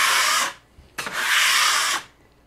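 Drywall knife scraping across dried joint compound on a butt joint, knocking down tiny bumps before the next coat instead of sanding. Two scraping strokes: the first ends about half a second in, and the second starts about a second in with a click as the blade meets the wall.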